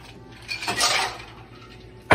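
Kitchenware clattering at a stovetop: one short burst of pot and dish clinks about half a second in, lasting about half a second.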